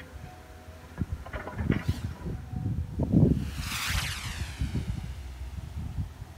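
Wind gusting on the microphone in uneven bursts, with rustling, heaviest in the middle of the stretch. Under it runs a steady low engine rumble from a truck on the dirt road below.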